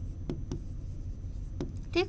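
Pen writing on a presentation board: a few light taps and scratches of the tip against the surface, over a steady low hum.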